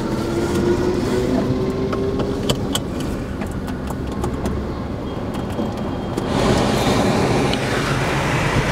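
Car engine running and road noise heard from inside the cabin, with a faint whine rising slowly in pitch over the first couple of seconds and a few small clicks; the noise grows louder a little past the middle.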